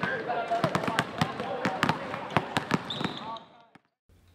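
Several basketballs bouncing on a gym's hardwood floor: many sharp, irregular thuds, with voices chattering over them. The sound fades away shortly before the end.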